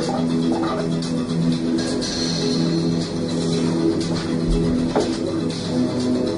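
Instrumental music from the soundtrack of a projected training film, played back into the room, with steady held notes that change every second or so.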